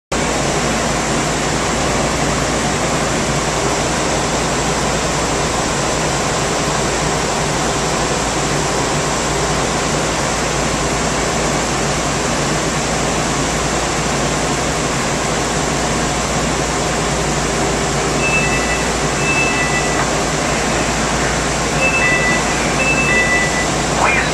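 Steady hiss and low hum of the air-handling inside a Newark AirTrain car standing at a station. About three-quarters of the way in, and again near the end, a two-tone chime beeps several times in alternation, the warning before the doors close.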